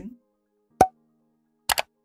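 Sound effects of an animated subscribe button: a single short pop with a brief pitched ring about a second in, then a quick double mouse click near the end.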